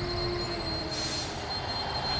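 Sound-design drone: a steady high-pitched whine over a low rumble, with a brief hiss about a second in.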